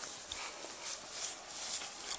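Rustling and handling noise from a phone carried through dry grass and brush: a steady hiss that swells and fades.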